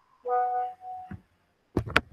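A short, steady musical tone with a few overtones lasting about half a second, then a fainter single held note, heard over a video call; a few sharp clicks come near the end.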